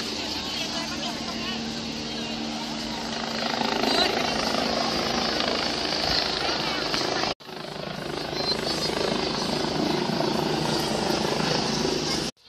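Busy city street: a vehicle engine running steadily under traffic noise and crowd chatter, with a brief dropout a little past halfway.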